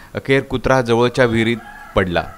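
A man narrating a news report, with a faint held tone in a pause near the end.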